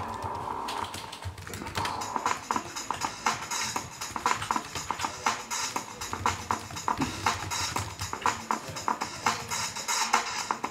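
Live-coded electronic music from TIDAL: a long drum-break sample chopped into sixteen slices and re-sequenced as a fast, stuttering percussion pattern, which starts up about two seconds in.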